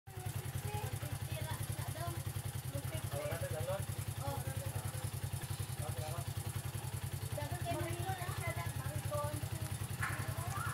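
A small engine or motor running steadily as a low hum with a fast, even pulse, with faint voices in the background.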